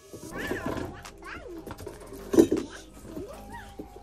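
A toddler making short wordless vocal sounds, small squeals and coos that rise and fall in pitch, several times.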